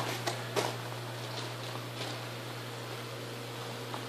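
Steady low hum under a faint even hiss, with a few faint clicks in the first second.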